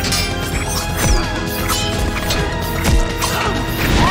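Action-film fight soundtrack: a loud, driving score under a rapid run of weapon clashes and hits, about one every half second. The blades strike with brief metallic ringing.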